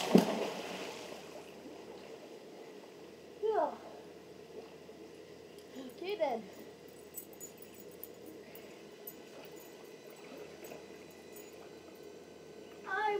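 A person jumping off a diving board into a swimming pool: one loud splash that washes away over about a second. Two short, falling, voice-like calls follow a few seconds apart.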